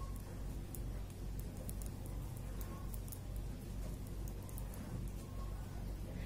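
Knitting needles working purl stitches in yarn: faint, irregular light ticks as the needles touch, over a steady low hum.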